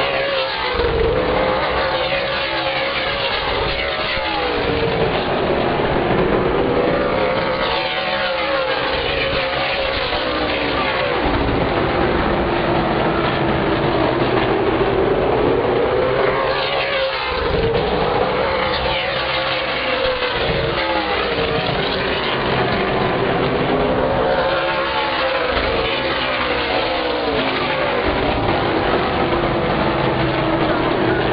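A field of ASA Stars Tour late-model stock cars running laps, their V8 engines rising and falling in pitch as they power down the straights and back off for the turns. The engine note swells and fades in a wave that repeats about every eight seconds.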